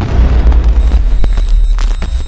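A loud, deep booming sound effect with a rushing noise over it, the sting of an animated logo end card, broken by a few sharp glitchy clicks in the second half.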